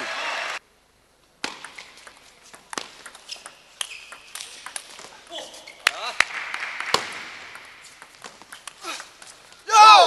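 Table tennis hall ambience between points: a low murmur of voices with scattered sharp clicks of a celluloid ball. The sound cuts out completely for just under a second about half a second in, and a loud shout comes just before the end.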